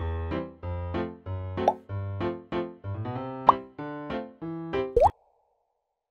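Playful cartoon intro music of short, bouncy keyboard notes, with quick rising slide-whistle-like pops three times. The music cuts off about a second before the end, leaving silence.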